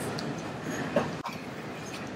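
Steady hiss of room noise with no speech, and a brief soft sound about a second in.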